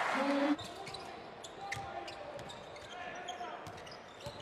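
Basketball game sound in an arena: a ball bouncing on the hardwood court over a low crowd murmur, with a brief voice in the first half second.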